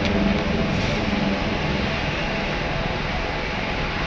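Ambient background music: low sustained notes over a steady hiss.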